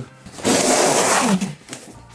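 A cardboard monitor box sliding across a counter: a rough scraping noise lasting about a second.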